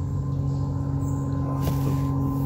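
A steady low hum holding a few fixed pitches, even in level throughout.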